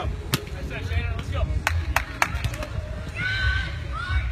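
Voices of people talking, with a few sharp taps in the first couple of seconds and a steady low rumble underneath.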